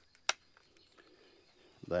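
A single sharp plastic click about a third of a second in, as the cellular trail camera's case is snapped shut after it has been switched on.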